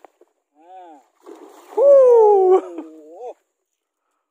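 A man's excited shout, a short call and then a long drawn-out one that falls in pitch, loudest about two seconds in. Under it, a splash at the lake surface near the lure.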